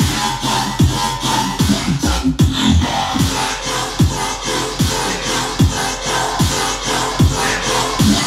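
Electronic background music with a steady beat: a deep bass drum that drops in pitch on each hit, a little more than once a second.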